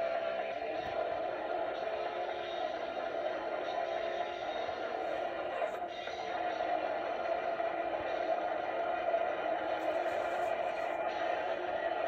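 Old recording of a live rock band playing a fast song, with drums, electric guitar and shouted vocals, played back through a TV speaker and re-recorded, so it sounds thin and muffled with little bass or treble.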